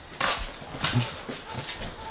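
Gear being handled on metal storage shelving: a few knocks and scrapes, with a short low vocal grunt or noise about halfway through.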